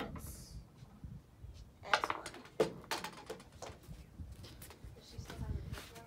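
Short, quiet snatches of speech over a low, steady background rumble, with a brief hiss just after the start.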